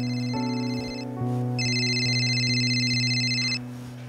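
A mobile phone ringing with a high, trilling electronic ringtone over a steady background music score. The ring stops about a second in, and a second ring of about two seconds follows.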